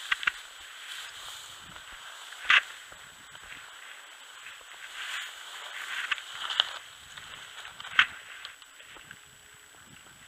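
Footsteps through tall dry grass and snow, with stalks brushing against clothing, broken by three short sharp snaps: one just after the start, one about two and a half seconds in and the loudest about eight seconds in.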